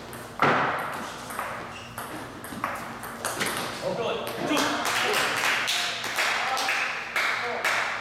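A table tennis rally: the ball clicks sharply off the bats and the table again and again in quick succession, then stops shortly before the end as the point finishes.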